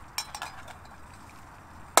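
Titanium pot lid clinking lightly as it is lifted off a pot of just-boiled water on a small wood stove: a few quick metallic clicks in the first half second.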